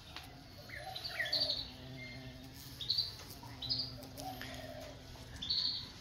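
Small birds chirping in short, high calls that repeat every second or so.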